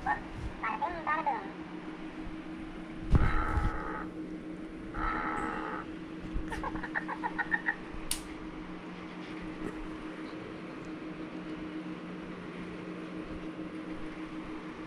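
Pet fox making short high-pitched whining calls and a quick run of chattering yips, with a thump about three seconds in. A steady low hum runs underneath.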